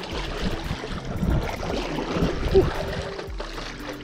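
Water rushing and splashing along the nose of an inflatable stand-up paddle board driven by paddle strokes, with wind buffeting the microphone.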